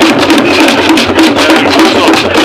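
Several skin-headed wooden hand drums played together with bare palms in a fast, dense rhythm.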